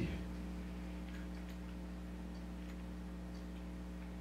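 Steady electrical hum with a few faint, irregular ticks.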